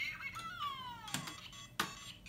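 Lego Mario figure's electronic sound effect, a pitched tone that slides down over about a second as the course is started, followed by two sharp clicks of plastic on plastic.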